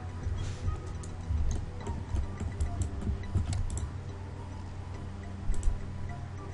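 Scattered computer mouse and keyboard clicks over faint background music.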